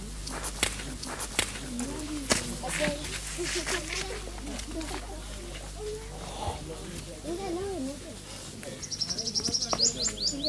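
Low, indistinct voices with scattered sharp clicks. Near the end a bird gives a quick run of high chirps.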